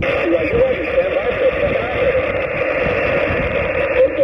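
Xiegu G90 HF transceiver's speaker playing a distant station's single-sideband voice reply on 40 meters: a thin, narrow-sounding voice half buried in steady band hiss.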